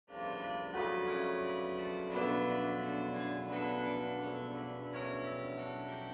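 Pipe organ playing sustained full chords that change about every second and a half, under a long reverberant ring.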